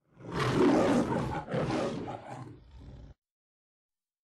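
Lion roar sound effect: two long roars in a row, the second trailing off before the sound cuts off suddenly about three seconds in.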